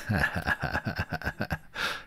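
A man laughing: a fast run of short breathy pulses, about eight a second, ending in a longer breath near the end.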